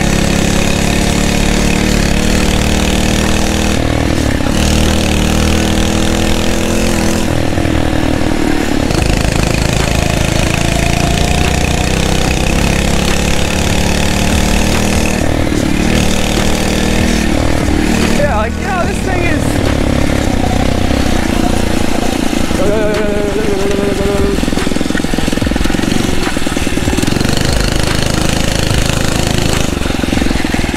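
A Phatmoto Rover motorized bicycle's 79cc four-stroke engine runs under load while being ridden, its pitch rising and falling with the throttle.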